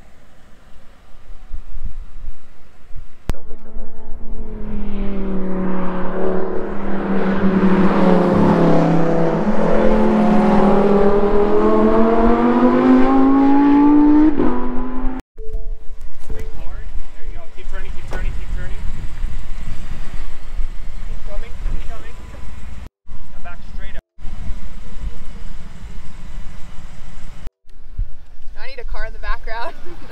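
Shelby Super Snake F-150's supercharged V8 accelerating hard, its note rising steadily for about ten seconds, heard from inside the cab. After a sudden cut near the middle, the truck runs on at a lower, rougher note.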